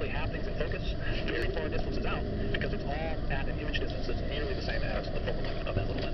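Steady restaurant background of indistinct voices and clatter, with close handling noise and the rustle of paper sheets being turned.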